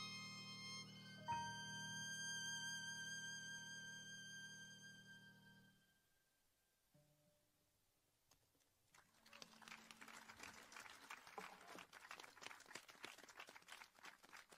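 A violin plays the closing notes of a piece over a low sustained accompaniment, shifting to a higher note about a second in and holding it as it fades out about six seconds in. After a few seconds of near silence, a small audience applauds.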